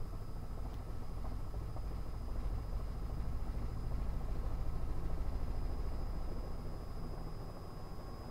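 Robinson R66 helicopter's turbine engine and rotor heard from inside the cabin on final approach to a helipad: a steady low drone that swells a little midway and eases near the end.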